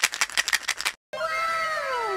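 An added cartoon-style sound effect. A fast clicking rattle of about ten clicks in a second is followed, after a short break, by a cascade of chiming tones that each slide down in pitch, one after another.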